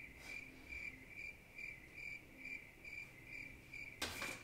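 Faint cricket chirping in a steady, even rhythm of about two to three chirps a second.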